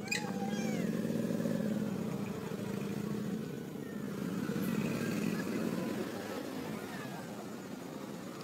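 A motor vehicle engine running steadily nearby, its low drone rising a little about a second in and easing off after the middle. Right at the start a short high call sweeps down in pitch.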